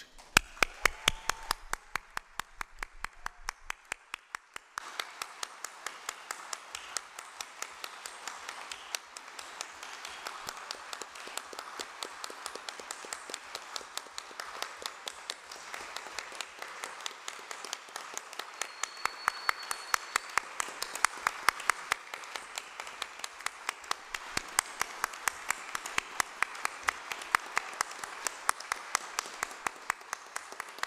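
A hall audience giving a minute of applause in tribute. Sharp claps keep a steady beat throughout, and about five seconds in the crowd's fuller applause swells in and holds.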